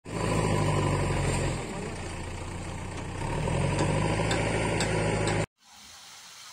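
An engine running steadily with a low hum. It drops in level for about a second and a half midway, comes back up, and cuts off suddenly near the end.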